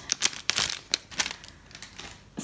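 Cellophane shrink-wrap crinkling and crackling as it is pulled off a sketchbook by hand. The crackles come thick in the first second or so, then thin out and fade.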